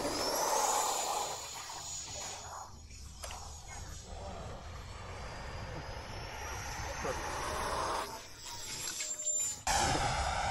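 Electric ducted-fan RC jet whining. Its pitch rises in the first second and climbs again through the second half.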